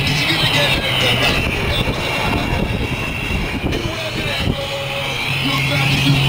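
Wind, road and traffic noise in an open-top convertible on the move, over a steady low engine hum, with indistinct voices.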